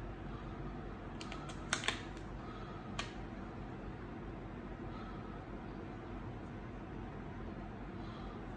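A clear plastic HTV carrier sheet being handled and peeled back from flocked vinyl on a T-shirt, giving a cluster of sharp clicks and crackles a second or two in and one more click at about three seconds. A steady low hum runs underneath.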